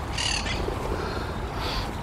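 Flock of feral pigeons jostling over food, with short flurries of wing flaps just after the start and again near the end, over a steady low rumble.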